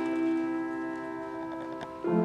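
A keyboard chord held and slowly fading, several steady notes sounding together.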